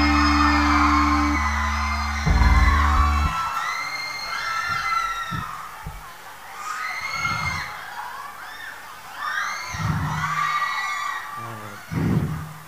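An amplified rock band's last chord ringing, closed by a loud final hit a little over two seconds in that cuts off sharply, followed by an audience cheering with high-pitched screams and whoops and a few low thumps.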